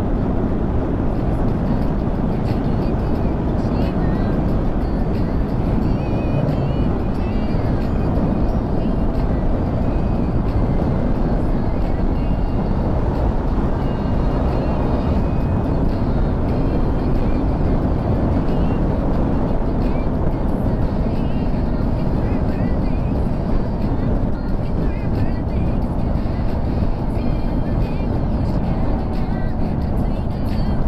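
Steady wind rush and road noise from a motorcycle riding at expressway speed, with the engine running underneath.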